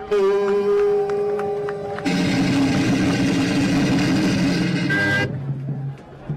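Music of long held notes: a single sustained note for about two seconds, then a fuller chord held for about three seconds that cuts off suddenly.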